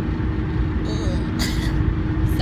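Steady road and engine noise inside a moving car's cabin at highway speed: a low rumble with a constant hum. A brief voice sound comes about halfway through.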